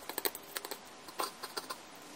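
Quick, irregular small clicks and taps of fingers breading food by hand, working pieces through egg wash and breadcrumbs in ceramic plates, with a denser cluster about a second in.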